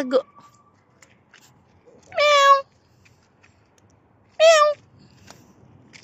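A domestic cat meowing twice: two short, high-pitched meows about two seconds apart.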